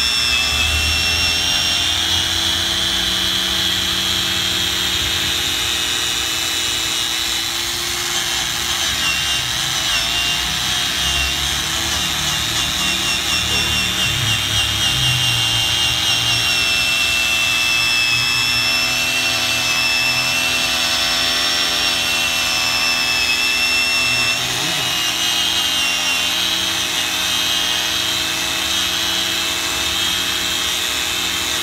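Electric power tool spinning an orange buffing pad against an engine cover to polish it, running continuously with a steady high-pitched whine that wavers slightly in pitch.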